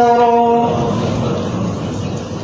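A chanting voice holds a final note and breaks off about a second in, leaving a steady rushing noise that slowly fades.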